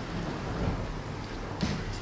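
Low rumbling room noise with faint rustling and one soft knock about one and a half seconds in.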